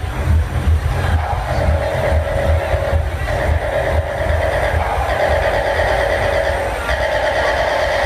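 Techno played loudly over a PA system in a tent: a steady kick drum about twice a second, with a sustained synth drone coming in about a second in and building.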